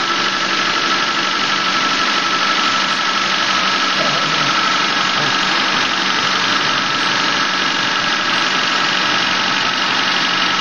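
1997 Honda Civic EX's four-cylinder engine idling steadily, heard close up in the engine bay, still warming up after a cold start.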